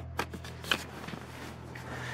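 Handling noise from a handheld camera being turned around: a few light clicks and rustles, the strongest right at the start and another under a second in, over a low steady hum.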